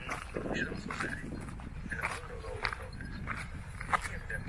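Indistinct talking over a low rumble of wind noise.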